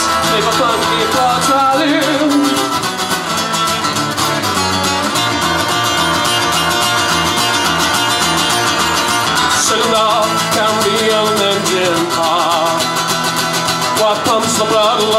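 A live band playing a guitar-led passage of a song with no vocals, over a steady beat.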